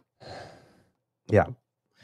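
A man lets out a short, breathy sigh, then says a brief "yeah."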